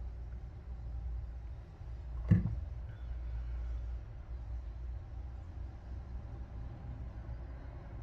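Quiet room with a steady low hum, and one short throat sound about two seconds in as a mouthful of green juice is swallowed from the bottle.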